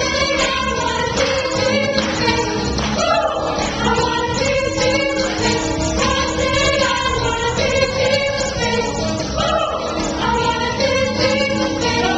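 Mixed adult church choir of women and men singing a gospel song, the voices holding long notes together without a break.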